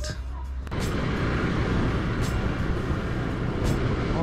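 Motorcycle running at low speed in slow traffic, heard from the rider's camera: a steady engine rumble under a noisy rush of wind on the microphone. It starts abruptly about a second in.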